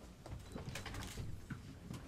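Low room rumble with scattered soft rustles, shuffles and a few light clicks as several people handle clothing and props close by.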